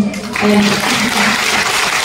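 Audience applauding: a dense, steady wash of many hands clapping that swells in about a third of a second in and holds.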